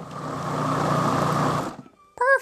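Breville Sous Chef 12-cup food processor running, blending thick banana-oat batter: its motor builds up over the first half second, runs steadily, then cuts off shortly before the end.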